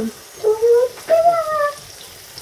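Cheese pancakes frying in oil in a frying pan, sizzling faintly, with two short untranscribed voice sounds in the middle, which are the loudest things heard.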